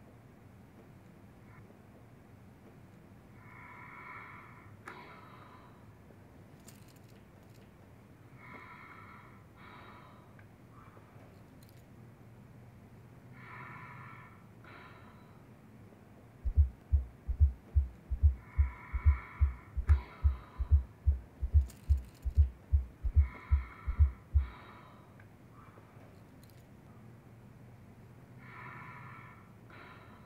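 Simulated breath sounds from a Laerdal patient-simulator manikin, a soft breath about every five seconds, which the nurse judges clear. About halfway through, a run of loud, deep heartbeat thuds, about two a second, lasts about eight seconds.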